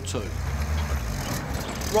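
WWII-style Pioneer 251 half-track driving across a grass field, its engine running with a low steady rumble and its tracks rolling.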